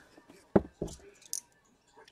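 A cardboard box being handled and shifted on a table: two short knocks about a second apart, with one spoken word between them.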